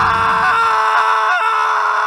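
A loud, long scream held at one steady pitch, with a brief waver a little after the middle.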